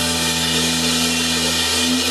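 Live rock band holding a sustained chord: electric bass and guitar notes ringing out steadily over a wash of cymbal, with no drum beat.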